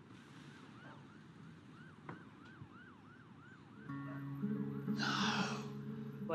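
Film soundtrack: a faint short rising-and-falling tone repeats about two or three times a second. About four seconds in, sustained low music notes come in and the level rises, and a loud rushing burst sweeps downward about a second later.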